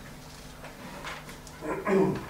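Quiet room tone in a meeting room, then a short burst of a person's voice near the end.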